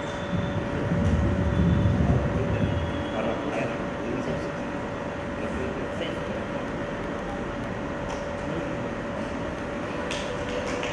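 Low rumble from a handheld microphone being handled, loudest from about a second in to about three seconds, over a steady background hiss with a constant hum.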